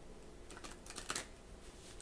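Tarot cards being handled: a few faint, quick clicks and a short rustle, clustered around the middle.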